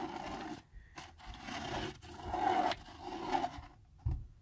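Pen tip scratching over paper as a plastic spirograph gear is pushed around a toothed plastic ring, in uneven strokes that swell and fade, with a few light clicks of the gear teeth.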